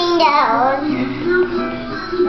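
A small child singing without words in a sing-song voice, the pitch sliding down about half a second in.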